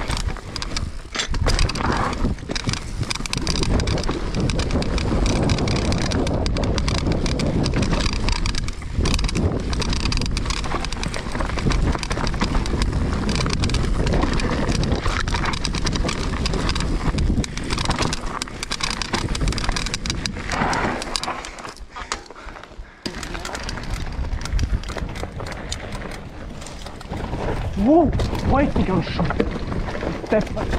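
Mountain bike ridden fast down a dirt forest trail: steady tyre noise on dirt and roots with constant clattering and rattling of the bike over bumps. The noise dips briefly a little after three-quarters through, then picks up again.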